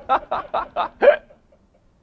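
A man laughing close to the microphone: a quick run of short ha-ha pulses, about five a second, that stops about a second and a half in.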